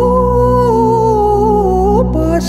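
Greek Orthodox Easter hymn in Byzantine style: the melody is held on one long, gently wavering note that slides a little lower near the end, over a steady low drone.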